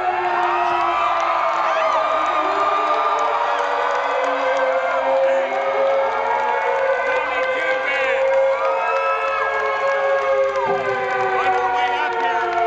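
Concert crowd cheering and whooping, with many voices holding long shouts over one another. A low rumble comes in near the end.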